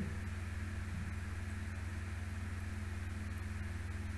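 Steady low hum with faint hiss: the recording's background noise floor. No sound from the needle or syringe stands out.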